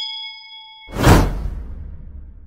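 Subscribe-button animation sound effect: a bright bell-like ding rings on, then cuts off about a second in as a loud whoosh with a deep rumble sweeps in and slowly fades.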